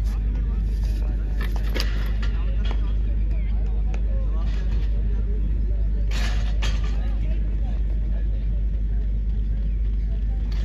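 Indistinct voices of people around an athletics track over a steady low rumble, with a few sharp clicks and a louder rush of noise about six seconds in.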